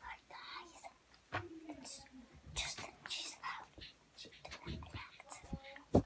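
Close, soft whispering in short breathy phrases, with a single sharp tap just at the end.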